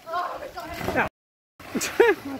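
People's voices calling and talking as they watch, cut off abruptly for about half a second a little after one second in, then resuming loudly near the end.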